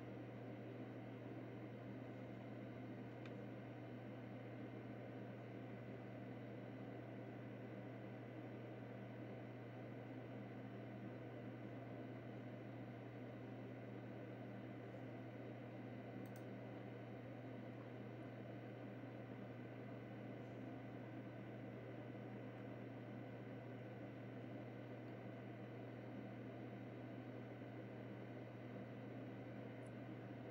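Steady low hum with a faint even hiss, unchanging throughout; a faint click about sixteen seconds in.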